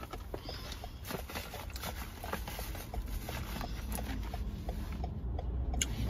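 Faint, irregular light taps, clicks and rustles of small items being handled while dropped things are picked up inside a car, over a low steady car-cabin hum.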